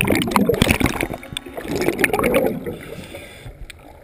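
Water sloshing and gurgling around a head-mounted GoPro's waterproof housing as it dips in and out of the surface, with many small splashes and crackles, loudest in the first two seconds and dying down near the end.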